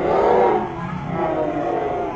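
Loud, harsh human voices shouting, strongest in the first half-second, with more shouting after.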